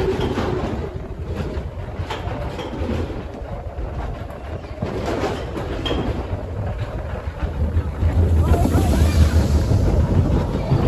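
Roller-coaster bobsled car rolling along its tubular steel track, with a steady low rumble and rattling. Near the end it comes into the open and wind buffets the microphone.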